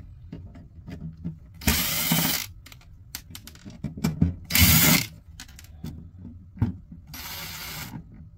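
Cordless drill-driver running in three short spells, backing screws out of a computer power supply's metal case, with small clicks and knocks of handling between the runs.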